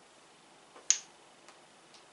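Plastic ball-and-stick molecular model being handled, its pieces clicking against each other: one sharp click about a second in, with a small click just before it and two faint ticks after.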